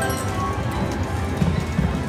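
Prowling Panther slot machine playing its game music with a repeating drum-like beat while the reels spin, with short electronic tones over it.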